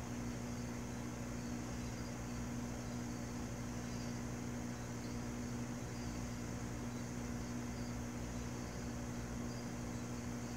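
Aquarium air pump humming steadily, with bubbles streaming from the air line into the tank water.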